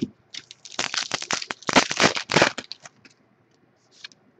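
Foil trading-card pack being torn open and crinkled in the hands: a dense burst of crackling from about half a second in until nearly three seconds.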